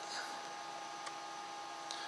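Faint steady background hum with a thin constant tone, and a single small click about a second in.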